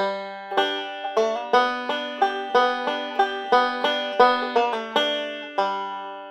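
Five-string banjo picked Scruggs style: a quick, even run of forward and backward rolls with a slide and a pull-off, played a little faster than lesson speed. The last notes are left to ring and fade.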